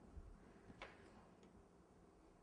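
Near silence: room tone with a faint click a little under a second in and a fainter one about half a second later, from a small cutter pressed into fondant on the work board.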